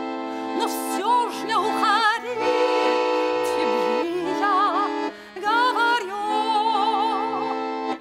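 Piano accordion holding slow, sustained chords while a woman sings over it with a wide vibrato. The music dips briefly about five seconds in.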